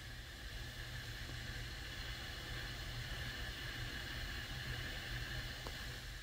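A steady whirring hiss over a low hum, like a fan or a machine running, with one faint click near the end.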